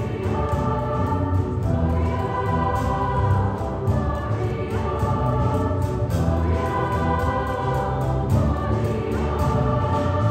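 Children's choir singing in parts, holding long notes that change every second or two, over a low instrumental accompaniment, in the echoing space of a church.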